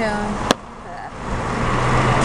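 A single sharp click, then a car's engine hum that swells up steadily from about halfway through.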